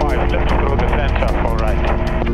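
Helicopter in flight: a steady, rapid rotor beat over engine rumble, heard under music.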